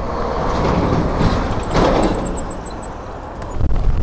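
Wind rushing over a bike-mounted camera's microphone while riding, with road traffic behind it; the rush swells and fades about two seconds in.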